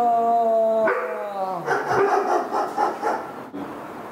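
A drawn-out yawning vocal sound, falling slowly in pitch, ends about a second in. It is followed by a run of short dog barks and yelps.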